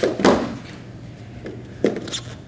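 Wrestlers' bodies hitting a foam wrestling mat during a takedown: a heavy impact about a quarter second in, then a sharper one near the end.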